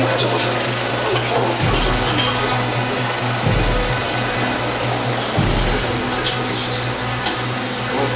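35 mm film projector running, a steady dense mechanical whir with a low hum. Music plays underneath, and there are three low thuds about two seconds apart.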